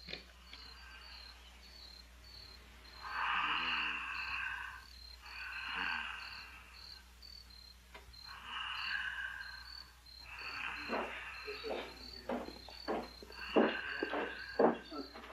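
Crickets chirping steadily, a high, even pulse about twice a second. Four louder buzzing bursts of about a second each come every two or three seconds, and a few soft rustles near the end.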